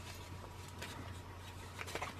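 Faint rustling and a few light ticks of baker's twine being pulled off its holder by hand, over a low steady hum.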